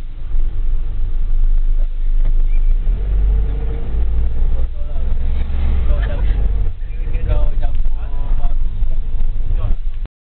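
Steady low engine and road rumble heard inside a moving vehicle's cab, with a voice over it in the second half.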